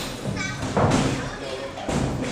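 Boxing gloves landing punches in sparring: a few dull thuds, about one a second, among voices calling out.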